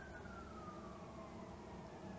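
Faint background hiss with a faint high whine that slowly falls in pitch.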